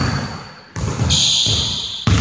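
Basketball bouncing and sneakers squeaking on a hardwood gym floor: a few thuds, one at the start and another about three quarters of a second in, then a high squeak held through the second half.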